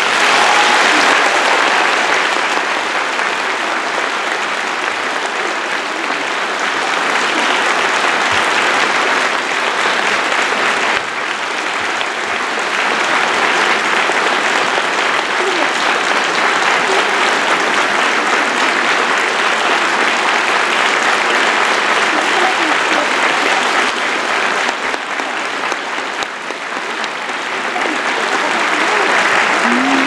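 Theatre audience applauding as the music ends: dense, steady clapping that breaks out sharply and holds loud throughout, easing slightly a couple of times. A few brief shouts rise above it near the end.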